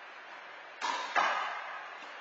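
Handball serve: two sharp smacks under half a second apart, with a short echo, as the small rubber ball is struck by the open hand and then hits the front wall.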